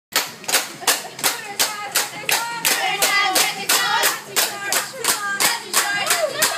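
A group clapping hands in a steady rhythm, about three claps a second, for a birthday song. Voices singing along join in over the claps from about two seconds in.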